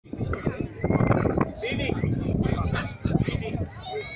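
Voices of people talking, with calls from parrots mixed in.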